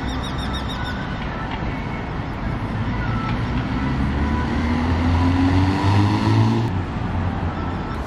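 City street traffic, with a vehicle engine accelerating, its pitch rising and growing louder toward about six seconds in, then cut off abruptly near the end.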